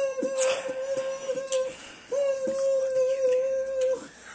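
Beatboxer holding two long hummed notes into a microphone, each just under two seconds with a short break between, while sharp percussive clicks from the mouth sound over them.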